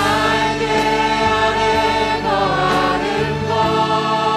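A worship team of many voices singing a slow Korean praise song together, with long held notes, over a live band accompaniment.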